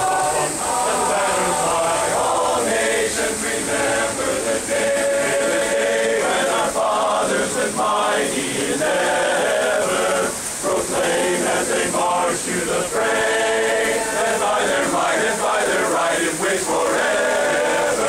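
Large men's barbershop chorus singing a patriotic song a cappella in close harmony. The chords are held through long phrases, with short breaks between them.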